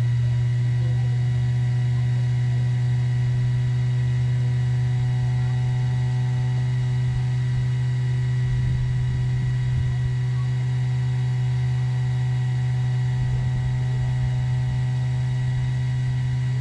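A steady, unchanging electrical hum, low and strong, with a faint high whine over it and a few soft low rumbles around the middle.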